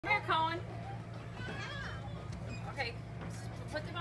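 Young children's voices: a brief high-pitched falling call at the start, then faint scattered chatter over a steady low hum.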